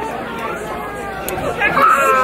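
Chatter of many diners talking at once on a busy restaurant patio, with a nearer voice starting up near the end.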